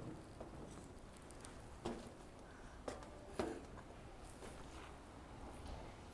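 Mostly quiet, with a few faint taps and scuffs as a toddler's hands and boots move on a steel diamond-plate playground platform. There are also a couple of short, faint voice sounds about two and three and a half seconds in.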